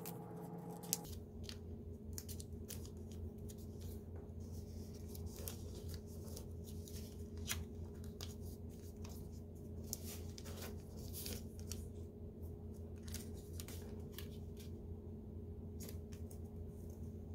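Origami paper being folded and creased by hand on a wooden table: faint, irregular rustles and crackles of the paper as it is handled and pressed flat, over a low steady hum.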